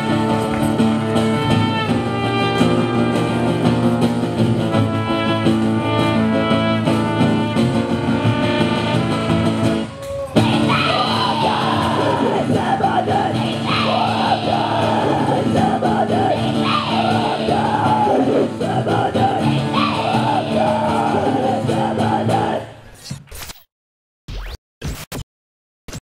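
Live acoustic folk punk band playing at full volume: acoustic guitar, washboard and trumpet, with a held-note instrumental melody for the first ten seconds. After a brief break about ten seconds in, shouted vocals come in over the band. The music stops about 23 seconds in, followed by a few short electronic blips.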